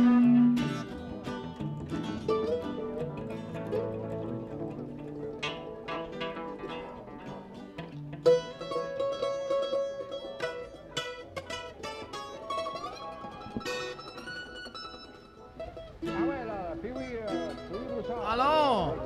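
Music: a Cajun medley played on plucked string instruments, a quick run of picked notes. Near the end, wavering tones that slide up and down come in.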